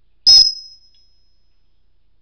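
African grey parrot giving one sudden, very loud, shrill beep-like call: a single high tone that fades out over about a second.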